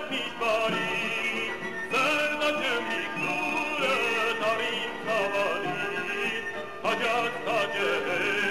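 A male folk singer singing an Armenian folk song in a full, operatic voice with heavy vibrato, over instrumental accompaniment. His phrases break briefly about two and seven seconds in.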